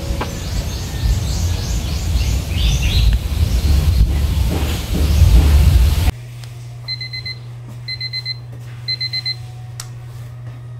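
A loud, dense noise with chirp-like sounds in it for about six seconds, which cuts off suddenly. After that a low steady hum, and a digital alarm clock beeping in three short bursts of quick beeps, about one burst a second, as the wake-up alarm.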